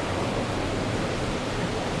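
Steady, even background noise like a constant hiss, with no change through the pause.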